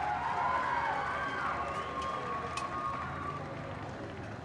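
Fairly faint crowd noise of cheering and distant voices, with the echo of the PA announcement dying away in the first second or so, slowly fading.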